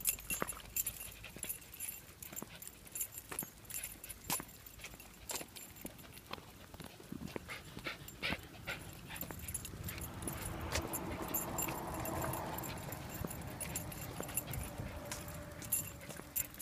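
Small Maltese dogs whimpering, with scattered sharp clicks throughout. The whining is strongest from a little past the middle onward.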